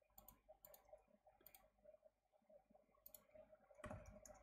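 Faint clicking of a computer mouse: a scattered handful of short clicks, some in quick pairs.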